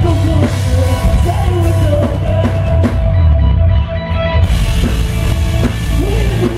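Loud live rock band through a stage PA: pounding drum kit, electric bass and distorted guitars, heard from the crowd.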